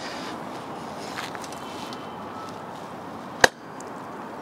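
Steady outdoor street ambience, then one sharp click about three and a half seconds in as a rider handles and mounts a folding electric fatbike.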